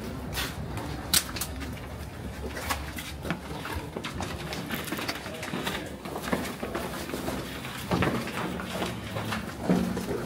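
Footsteps of several people walking and stepping down onto a rough stone floor, with scattered sharp scuffs and clicks and faint murmured voices.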